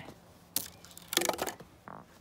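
A dry stick of kindling snapping underfoot: one sharp crack about half a second in, then a louder, splintering snap a little past the middle.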